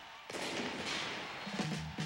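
Arena crowd noise that starts suddenly about a quarter second in and then holds steady, with a low steady tone joining near the end.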